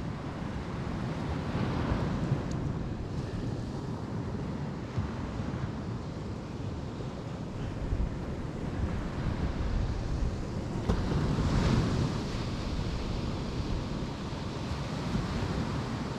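Sea surf breaking and washing on the beach, mixed with wind buffeting the microphone. The wash swells about two seconds in and again more strongly around eleven to twelve seconds.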